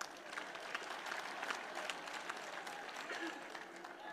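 Large audience applauding in a hall: many claps blending into a faint, even patter.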